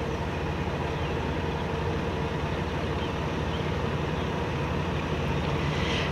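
A steady low rumble with a hiss over it, unchanging throughout, that cuts off abruptly at the very end.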